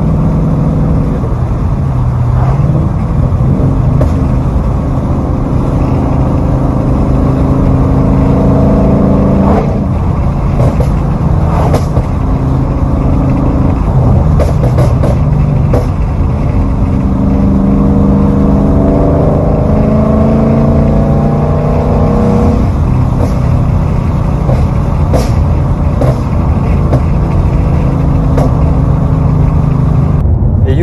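Ford Mustang GT's 5.0 V8 heard from inside the cabin, revving up under throttle several times. On lift-off the exhaust crackles and pops, the sound of a burble (pops-and-bangs) tune that engages between about 3,000 and 5,000 rpm.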